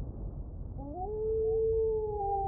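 A wolf howl sound effect: one long howl that starts about a second in, rises in pitch and then holds steady, over a low rumble.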